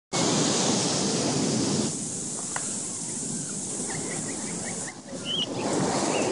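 Wind buffeting the microphone over a steady wash of ocean surf, loudest for the first two seconds and then easing. A few faint high chirps sound during the quieter stretch.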